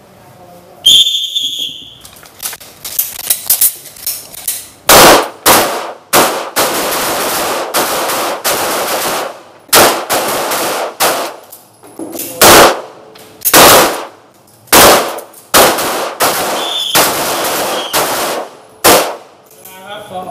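Rapid-fire 9 mm pistol gunshots from several shooters on a firing line, loud and irregular, sometimes in quick runs, each with an echoing tail. A steady high beep about a second in starts the string, and a shorter high tone sounds near the end.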